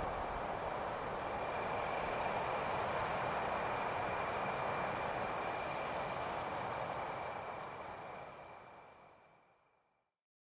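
Outro of a electronic pop track: a steady wash of noise with two faint, thin, high steady tones over it, no beat or voice, fading out from about seven seconds in to silence near the end.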